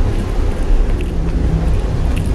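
Loud, steady low rumble of city road traffic, with a few faint clicks above it.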